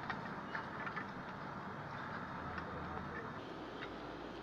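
A few light clicks and taps as the parts of an air-conditioner wall bracket are handled and fitted together, over steady background noise.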